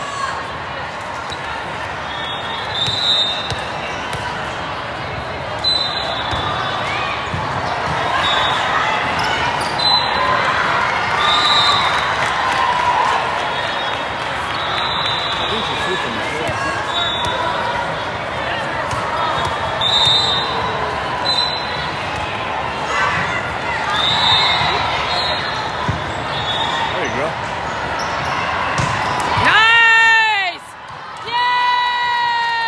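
Indoor volleyball being played in a large, echoing hall: ball contacts over steady chatter and calls from players and spectators.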